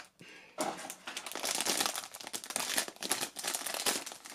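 Foil blind-bag wrapper crinkling and crackling as it is handled and pulled open by hand, starting about half a second in.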